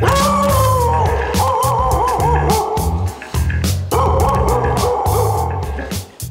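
Dog howling: two long calls that fall in pitch and waver, with a short break between them, over background music with a steady beat.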